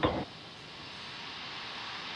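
Steady hiss of a fuelled Falcon 9 venting vapour on the launch pad, slowly growing louder.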